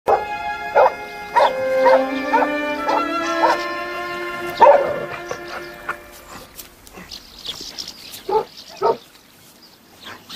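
Dogs barking repeatedly: a string of short barks in the first five seconds, then two more near the end. Music with long held notes plays under the first barks and fades out about six seconds in.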